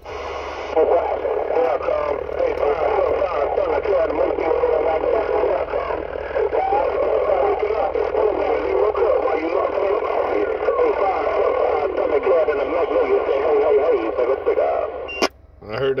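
CB radio receiving AM skip: several distant stations talking over one another in a garbled, tinny jumble, with hiss and steady whistles. One whistle slides down in pitch midway. A sharp click comes near the end as the mic is keyed.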